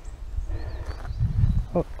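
Low rumbling walking noise on a hiker's camera microphone while he climbs a gravel track, heaviest just past a second in, ending with the spoken word 'up'.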